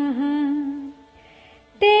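A woman's voice chanting a Sanskrit verse to a slow melody. She holds a long note that ends about a second in, and after a short pause starts the next line at a higher pitch near the end.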